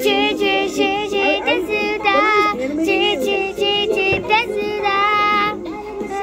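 A girl singing karaoke into a microphone over a backing track, her melodic lines continuing through the whole stretch with only short breaths between phrases.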